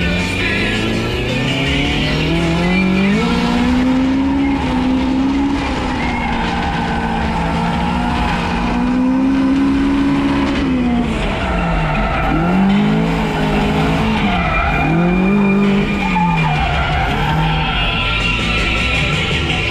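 Toyota AE86 Corolla engine revving hard while drifting, its pitch holding high and then dropping and climbing again several times as the throttle is worked between slides.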